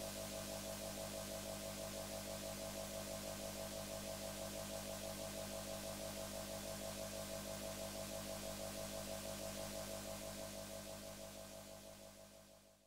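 A sustained synthesizer chord, several tones held steady with a faint even pulsing, fading out over the last couple of seconds as closing music.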